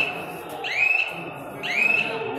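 A high whistling tone that swoops up in pitch and then holds for about half a second, repeating about once a second.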